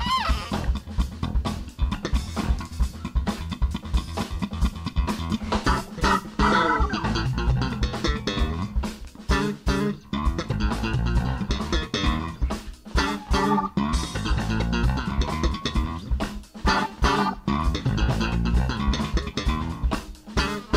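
Live funk band playing, with a prominent electric bass guitar line over a drum kit keeping a steady beat.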